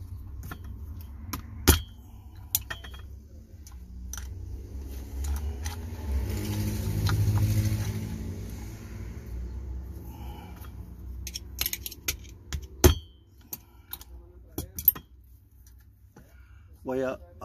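Scattered metallic clicks and clinks of pliers on a steel snap ring and starter drive shaft as the springy ring is forced into its groove under the stop collar, with a few sharper snaps, the loudest about two seconds in and near the end. A low rumble swells and fades through the middle.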